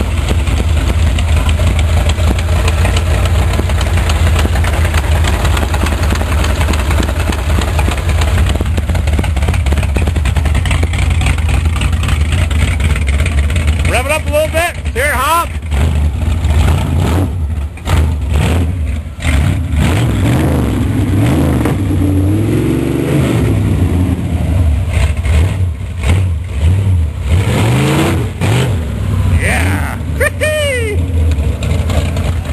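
A Chevrolet gasser's engine running with a heavy, loud rumble. In the second half it is revved in rising and falling swells as the car pulls away.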